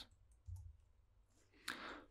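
Near silence with a few faint computer keyboard keystrokes as code is typed. A short soft rush of noise comes near the end.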